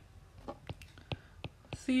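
A stylus tapping and ticking against a tablet screen while writing by hand, about ten short, sharp clicks at an uneven pace. A woman's voice starts just before the end.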